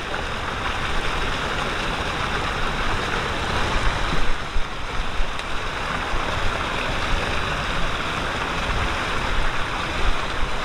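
Water rushing and churning steadily as it pours from the jets into the start pool of a tube water slide.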